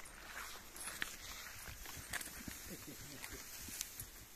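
Scattered light clicks and soft thuds of footsteps and a chain lead clinking as a draught mare is led through grass.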